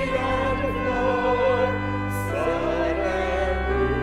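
A hymn sung with vibrato over sustained instrumental chords, moving to a new chord a little past halfway: the closing hymn after the dismissal at the end of a Catholic Mass.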